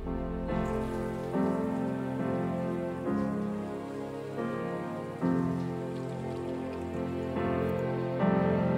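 A shower running, its spray a steady hiss, under soft instrumental music whose sustained chords change every second or so.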